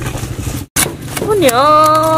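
A steady low hum under faint rustling noise, broken by a sudden brief dropout, then a high-pitched voice starting to speak about a second and a half in, drawing out a gliding vowel.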